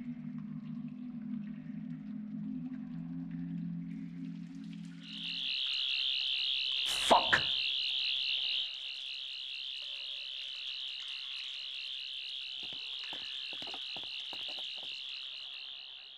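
Electronic soundtrack sounds: a low steady drone for about five seconds gives way to a high, steady warbling tone like an alarm. A single sharp hit comes about seven seconds in, and a few soft knocks come near the end.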